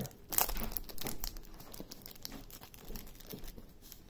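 Clear plastic packaging crinkling and crackling as it is handled and a pack of card sleeves is worked out of it. The crinkling is busiest in the first second or so, then sparser and quieter.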